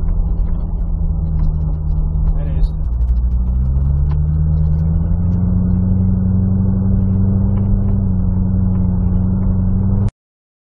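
2012 Corvette Grand Sport's LS3 V8 pulling along the road, heard inside the cabin: a steady engine note whose pitch drops about three seconds in, then climbs slowly as the car gathers speed.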